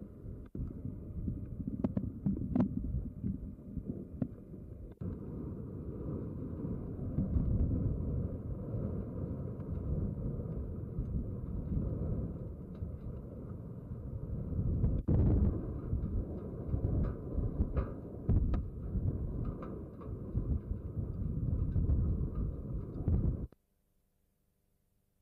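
A low, uneven rumble with scattered clicks, cutting off abruptly near the end.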